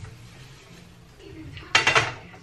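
Salt shaken from a canister over a frying pan: a short, loud rattle near the end, over a steady low hum.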